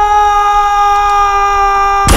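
A man's long, sustained scream held on one high pitch, rising sharply at its start and then held without break.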